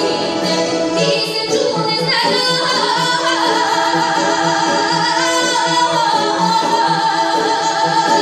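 A woman singing a Bulgarian folk song in a strong, ornamented solo voice, accompanied by a folk ensemble of bowed gadulkas and other folk string instruments.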